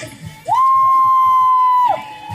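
Marching band music: horns hold a loud two-note chord for about a second and a half, scooping up into it and falling off at the end, over steady drum beats.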